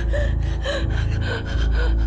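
A woman's short gasping cries of pain, four of them in quick succession, over a low steady music bed.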